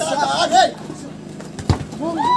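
Players and onlookers shouting during open play, then a single sharp thud near the end as a football is struck in a tackle.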